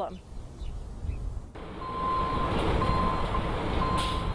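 Diesel engine of a loader running at a demolition site: a low rumble, then, after an abrupt cut about a second and a half in, louder machine noise with a steady high tone that breaks off briefly a few times.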